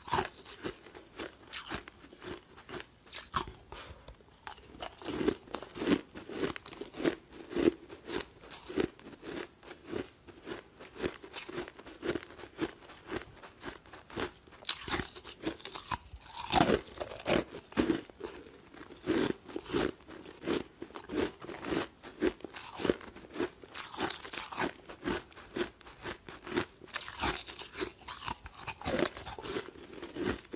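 Close-miked crunching of ice cubes being bitten and chewed: a steady, irregular run of sharp crunches, several a second.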